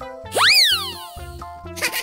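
Bouncy children's background music with a cartoon sound effect: a tone that swoops sharply up and then slides back down, about half a second in. A short hissy burst starts near the end.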